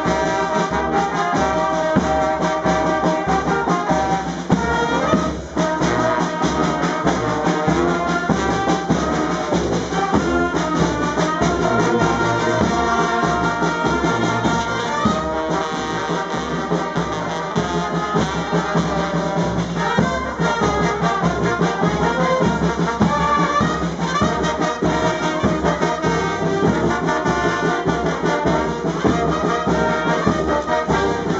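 A street brass band playing live: trumpets, trombones and a sousaphone over a steady snare drum beat.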